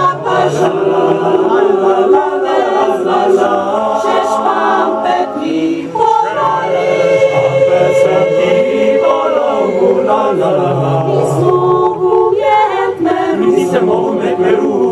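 Mixed choir of men and women singing together in harmony, holding chords, with a brief break about six seconds in as a new phrase begins.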